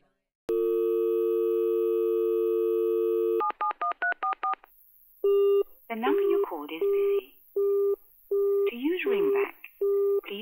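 Telephone line sounds: a steady dial tone, then a quick run of keypad (DTMF) tones as a number is dialled, then short beeps repeating under a voice.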